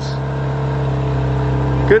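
Ferrari F430 Scuderia's V8 idling on its standard exhaust: a loud, steady low drone that swells slightly.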